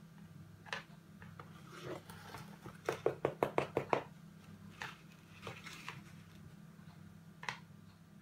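Small plastic spoon tapping and scraping on a model volcano and its foil tray: scattered light clicks, with a quick run of about eight taps near the middle. A low steady hum runs underneath.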